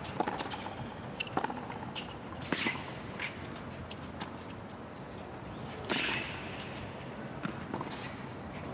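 Tennis rally on a hard court: racquets striking the ball in a string of sharp pops, about one a second, with the players' shoes scuffing and stopping on the court between shots.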